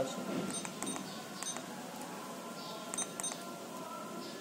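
Keypad beeps from a Verifone VX675 card payment terminal as its keys are pressed: five short, high beeps, a pair about half a second in, a single one at about a second and a half, and another pair about three seconds in.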